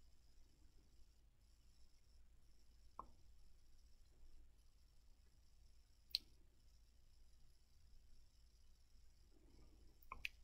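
Near silence, with two brief faint clicks, one about three seconds in and a sharper one about six seconds in, as a plastic adhesive tape-runner refill cartridge and its tape strip are handled.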